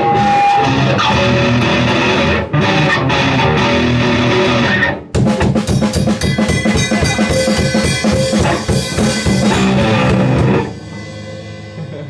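Loud, fast grindcore played live by a band, with electric guitar and drum kit. It breaks off briefly about two and a half seconds and five seconds in, carries on with rapid, even drumming, and stops about a second before the end.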